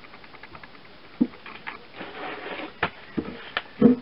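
Handling sounds at a workbench: several light, sharp knocks and clicks spread through, with a faint rapid ticking in the first second.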